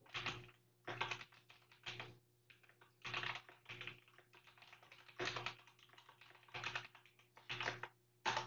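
Typing on a computer keyboard: short runs of quick keystrokes with brief pauses between them.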